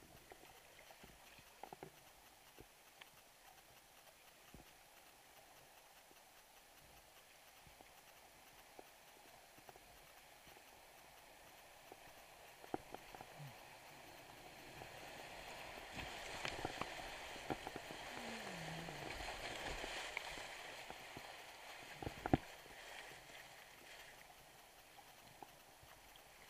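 Rushing creek water through a riffle grows louder from about halfway, then eases again, heard from a small paddle boat. Scattered knocks and splashes of paddle strokes run through it, with the sharpest knock near the end.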